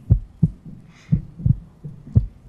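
Heartbeat sound effect as a suspense cue: steady low thumps, about three a second, under a countdown before a decision.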